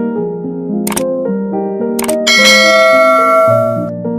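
Soft piano background music, overlaid with a subscribe-button sound effect: two sharp mouse clicks about one and two seconds in, followed by a notification bell ding that rings for well over a second.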